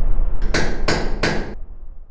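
Sound-effect logo sting: a low rumble with three sharp knocks in quick succession, about a third of a second apart, after which the rumble fades away.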